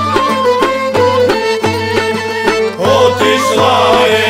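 Bulgarian folk instrumental band playing: a wind instrument carries the melody over accordion and a plucked tambura, with steady beats on a tapan drum. About three seconds in the music becomes fuller and a little louder.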